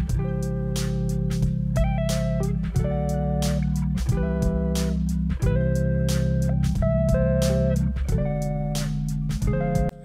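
Background music: guitar chords over a bass line with a steady beat.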